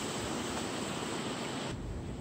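Wind on an LG G6 smartphone's microphone, recorded with its wind noise filter on: a steady airy hiss with the low rumble cut away. Near the end the filter is switched off and a deep wind rumble comes in.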